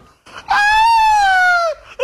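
A person's long, high-pitched falsetto cry, sliding down in pitch over about a second, then a short rising whoop near the end that breaks into laughter.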